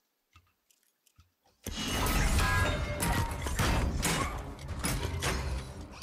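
Fight-scene audio from a TV series: after near silence with a few faint clicks, the fight breaks out suddenly about a second and a half in, a dense run of sharp hits and impacts over music and a low rumble.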